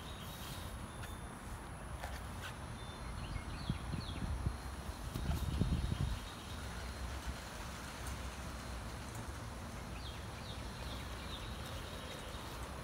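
Footsteps on grass and the rumble of a hand-held phone being carried outdoors, louder around the middle.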